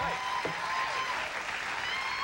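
Audience applause, a steady even clatter of many hands clapping.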